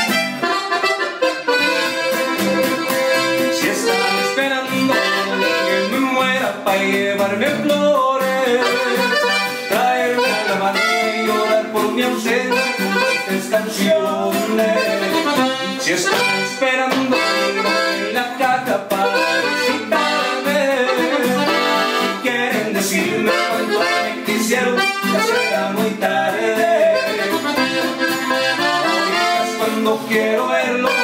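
Button accordion leading a norteño tune, backed by a 12-string acoustic guitar, played live and continuously.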